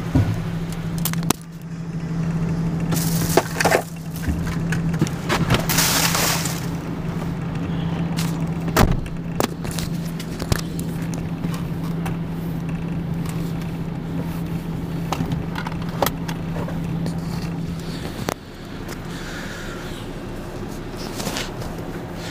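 Tipper lorry's diesel engine idling steadily with the PTO engaged, with scattered knocks and clunks and two short rushes of noise a few seconds in. The hum drops in level near the end.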